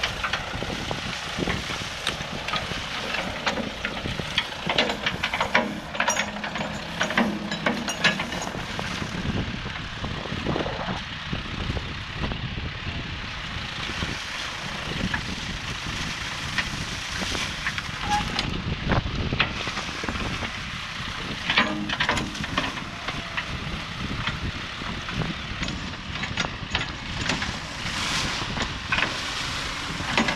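Ford 555D backhoe's diesel engine running steadily under load while the bucket digs into mud and packed sticks, with irregular knocks, cracks and clatter throughout.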